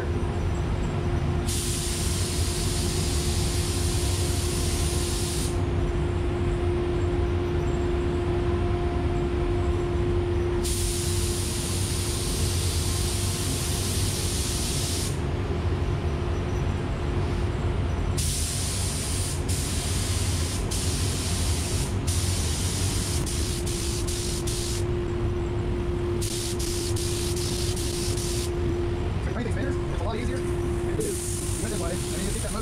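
Air spray gun hissing as paint is sprayed in passes: several sprays a few seconds long, with a run of short quick trigger bursts around the middle. A steady hum and low rumble continue underneath.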